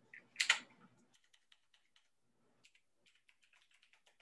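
Faint typing on a computer keyboard: a run of light, irregular keystrokes, with one louder short sound about half a second in.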